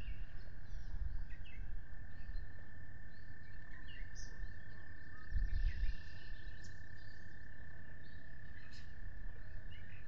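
A long, steady frog trill on one pitch, with short, high bird chirps scattered over it. Wind rumbles on the microphone about a second in and again a little past the middle.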